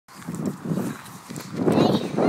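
Someone running alongside a child's bicycle: uneven footfalls mixed with voice sounds, with a higher voice near the end.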